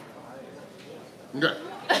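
Speech only: a short pause with low background room noise, then a man's brief spoken word about a second and a half in.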